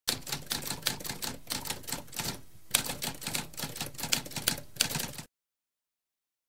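Typewriter sound effect: rapid, uneven key strikes clattering, with a brief pause about halfway through, stopping abruptly a little after five seconds.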